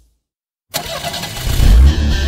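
Car engine starting abruptly about two-thirds of a second in and revving, louder from about a second and a half in.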